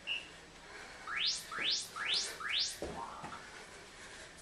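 Workout interval timer: a last countdown beep, then four quick chirps rising steeply in pitch, half a second apart, signalling the end of the rest and the start of a work interval. A thud follows near three seconds in.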